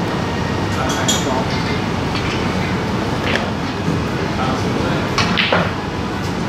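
Snooker room ambience: a steady murmur of background voices and room noise, with a few sharp clicks and knocks, the strongest near the end.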